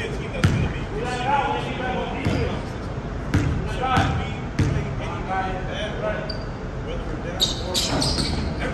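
Basketball bouncing on a gym floor: a few sharp dribbles, the last three about half a second apart, as a player readies a free throw. Voices chatter throughout in the echoing hall.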